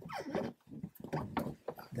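Squeaks and a run of short clicks from a steel pry bar levering a VW EOS roof locking mechanism, forcing a hydraulic cylinder's rod end down by hand to lock the rear roof member. A falling squeaky tone comes first, then the clicks.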